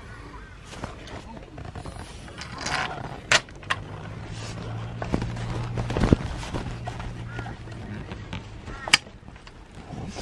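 Scattered sharp clicks and small knocks of a bolt and metal fittings being handled while the bolt is worked into an awning arm's bracket. The loudest clicks come about six and nine seconds in, over a low steady hum in the middle of the clip.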